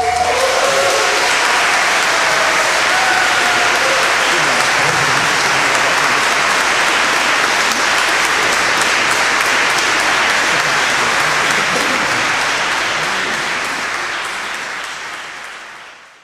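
Audience applauding, loud and steady, then fading out over the last few seconds.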